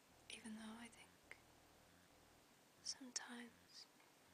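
Faint whispered voice: two short whispered phrases, one about half a second in and one about three seconds in.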